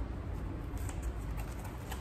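Quiet handling of a cardboard basket: masking tape being pressed and smoothed onto the cardboard, with light rustling and a few faint taps.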